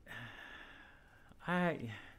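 A person's audible in-breath or sigh lasting about a second, drawn while pausing mid-sentence, followed by the start of speech near the end.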